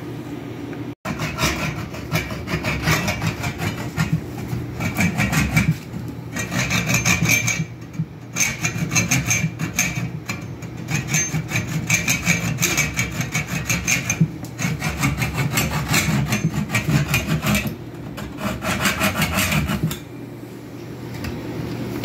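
A saw cutting through the wood of a chair frame, in long runs of fast, rasping strokes broken by short pauses, falling quieter near the end.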